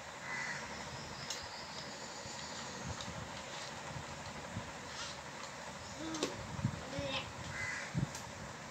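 Two short harsh bird calls, one about half a second in and one just before the end, over a steady background hiss with faint clicks of plastic toys being handled.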